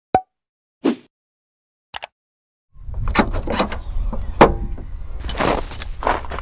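Three short clicking logo sound effects, then low wind rumble on the microphone with a run of knocks and rattles from fishing gear being handled in an open car boot, the loudest knock about halfway through.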